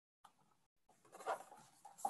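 Soft rustle of a picture book's paper pages being handled, starting about a second in after near silence.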